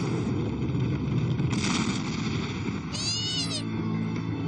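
Cartoon volcano sound effect: a continuous rumbling roar with a rushing swell of hiss about one and a half seconds in. About three seconds in, a short high-pitched squeal rises and falls, a frightened cartoon character's yelp.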